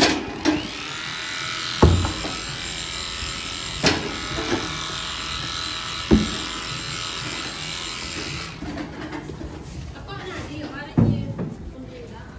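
Electric cattle clippers running with a steady buzz as they shave the hair off a cow's rump, baring the skin so a freeze-branding iron can make good contact. The clippers stop about eight or nine seconds in, with a few knocks along the way.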